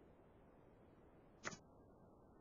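Near silence, broken once about one and a half seconds in by a brief tap from a sheet of paper being handled on a desk.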